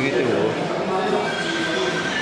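A person's voice, drawn out and sliding in pitch without clear words.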